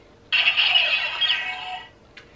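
A man's high-pitched excited squeal, about a second and a half long, fading toward the end.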